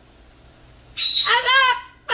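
A cockatoo speaking in a high, squeaky mimicked voice, saying "I love" with a drawn-out ending. It starts about a second in and lasts about a second.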